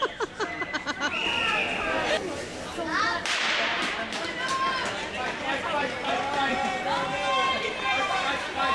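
Starting shot for a short-track speed skating race: a sharp crack about three seconds in, ringing briefly through the rink, followed by spectators calling out and cheering as the skaters race off.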